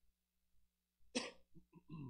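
A man coughs into his fist: one short, sharp cough about a second in, followed by a few quieter throat sounds.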